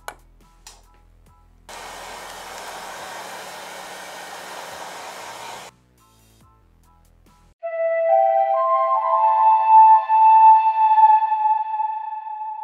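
Two sharp snaps of a pen-type battery spot welder firing at the start, then a heat gun blowing steadily for about four seconds, shrinking the black wrap over the 13-cell NiMH pack. From about seven and a half seconds in, louder music with long held notes that slide upward takes over.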